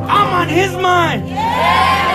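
Worshippers shouting and whooping in praise, with one long, loud cry that starts about halfway through, over a low, steady keyboard note.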